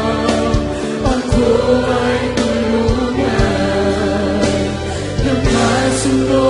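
Large mixed choir of men and women singing a Tagalog worship song in unison, with musical accompaniment and low beats underneath.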